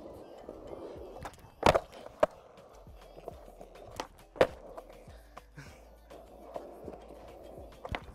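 Skateboard rolling on concrete with the sharp wooden clacks of the board popping and hitting the ground during nollie varial heelflip attempts: loud clacks about 1.7 s and just after 2 s in, another a little over 4 s in, and smaller knocks after.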